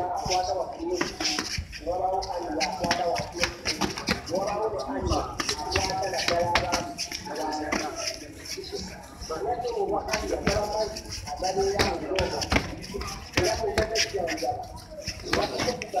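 Mostly people's voices, talking and calling out. Sharp slaps of boxing gloves landing during kickboxing sparring are scattered throughout.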